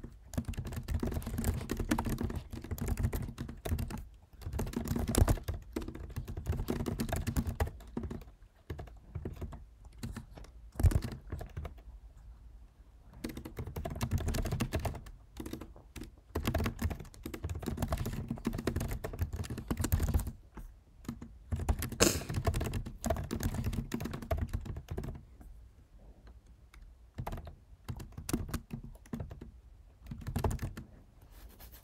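Typing on a computer keyboard: runs of rapid key clicks broken by short pauses, with a few louder single key strikes.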